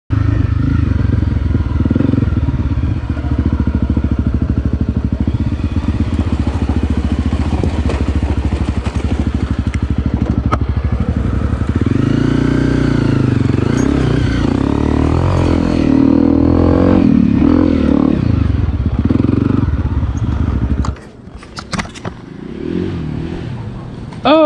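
Honda CRF250 Rally's single-cylinder four-stroke engine running while being ridden, its pitch rising and falling with the throttle. It stops abruptly near the end, leaving a few faint clicks.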